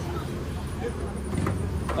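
Steady low rumble of motor vehicles running, with faint chatter over it and a man starting to speak at the very end.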